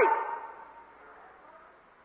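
A man's preaching voice ends its last word right at the start and trails off in a fading echo over about a second, leaving only a faint steady hiss of an old sermon recording.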